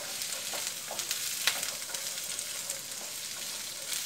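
Peeled garlic cloves sizzling in hot oil in a nonstick pan while being stirred with a wooden spatula: a steady hiss with scattered light clicks.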